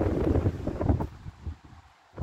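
Wind buffeting the microphone in low rumbling gusts, heavy for about the first second, then dying away to near quiet near the end.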